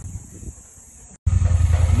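Large adventure motorcycle's engine running with a low rumble. It is cut off by a moment of silence just after a second in, then comes back much louder.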